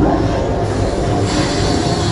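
Loud haunted-maze soundtrack: a steady, heavy low rumble with a rattling, mechanical edge.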